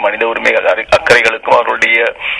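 Speech only: a man talking in Tamil, his voice thin and cut off above the mid-range, as over a telephone line.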